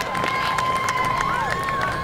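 Audience cheering and chattering, with long whistles that fall off at the end and scattered claps.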